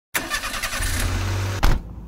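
Car engine starting. The starter cranks for about a second and a half, then the engine catches with a short rev near the end and drops to a quieter idle.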